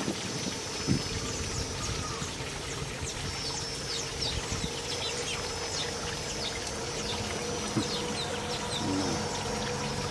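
Water trickling steadily in a small fountain pool over rocks. Through the middle a bird gives a run of quick, high, falling chirps.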